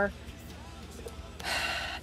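A woman's sharp intake of breath about one and a half seconds in, after a short quiet pause in her talk.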